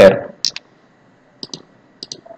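Computer mouse clicks selecting lines in AutoCAD: a single click about half a second in, then two close clicks about a second later.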